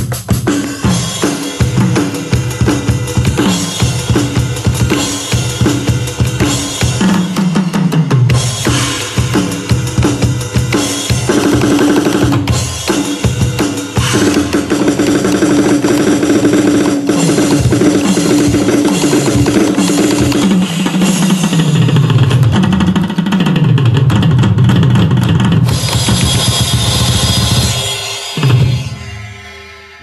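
Synthesized drum kit from a Creative Labs sound card playing a fast rock-and-roll beat with double bass drum, hi-hat and snare, broken by falling tom-tom fills. It fades out near the end.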